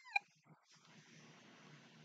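A woman's brief high-pitched squeal right at the start, then near silence.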